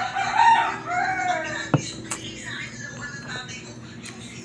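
A rooster crowing once, a call of about a second and a half that rises and then falls. A sharp click follows just after it ends.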